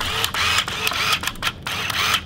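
Polaroid SX-70 Sonar OneStep's sonar autofocus mechanism whirring as the shutter button is half-pressed, driving the lens to focus. It runs in two stretches with a brief break about one and a half seconds in.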